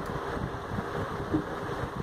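Steady rushing background noise with no distinct events.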